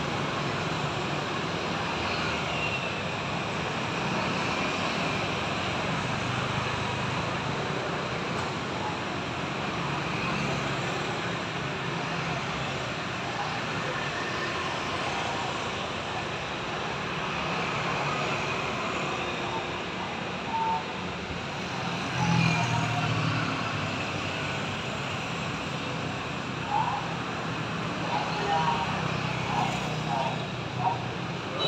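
Steady street traffic noise from motorbikes and scooters passing, with one vehicle passing louder about two-thirds of the way through. Faint voices come in near the end.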